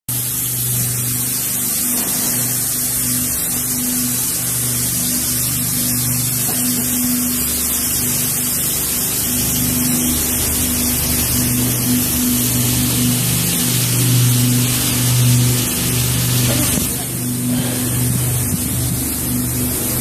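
Wood-texture steel-brush machine running: a steady low electric-motor hum under an even hiss.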